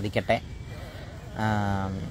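A man's voice: a short spoken word, then after a brief pause a drawn-out vowel held at one steady pitch near the end.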